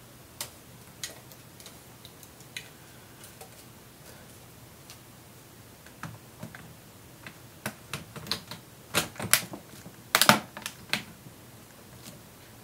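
Sharp plastic clicks and knocks from the plastic case of a Sony VAIO SVE151 laptop being handled and pressed together during reassembly. A few scattered clicks at first, then a quick run of louder clicks and knocks in the second half, the loudest about ten seconds in.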